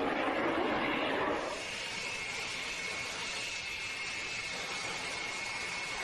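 Jet aircraft in flight, a steady rushing hiss of engine noise. It is louder for the first second and a half, then settles lower with a thin, steady high whine.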